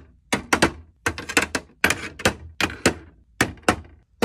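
Skincare jars and pump bottles set down and shuffled into a clear acrylic drawer organizer: a quick series of hard clacks and taps, several a second, in uneven clusters.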